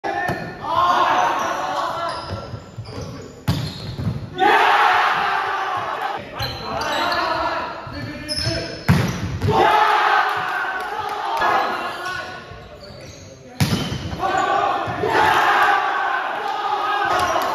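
A volleyball rally in a large echoing gym: several sharp slaps of hands and arms on the ball, each followed by players shouting and calling out.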